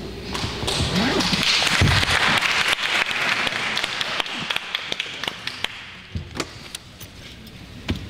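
Audience clapping, dense at first, then dying away into a few scattered claps in the second half.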